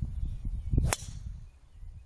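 Driver striking a golf ball off the tee: one sharp crack about a second in, over low rumbling noise on the microphone.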